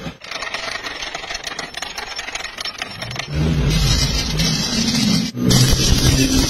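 Crackling of a stick-welding arc, a dense fizz of fine pops. About three seconds in, a louder low drone joins it, its pitch shifting in steps.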